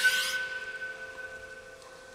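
A bright, shimmering sound-effect sweep at the start as a caption appears, then the held tones of the background music fading away.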